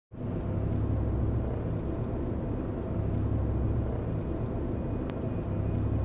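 A steady low rumble with a light hiss over it, starting abruptly, with a single sharp click about five seconds in.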